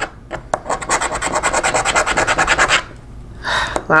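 A scratch-off lottery ticket's coating being scratched off in rapid, repeated strokes. The scratching stops a little under three seconds in.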